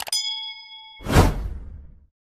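Sound effects for a subscribe-button animation: a mouse click, then a bright notification ding that rings for about a second, cut off by a loud whoosh that swells and fades away.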